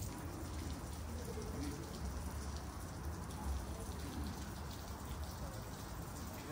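Water from a small stone fountain's jet splashing into its basin, a steady patter like rain, over a low rumble.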